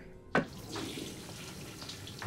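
Water running from a tap into a washroom sink, coming on suddenly about a third of a second in and then running steadily.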